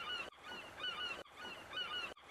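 Quiet background ambience: a faint hiss with scattered short, high chirps. It is broken by two sudden dropouts, as if chopped and repeated.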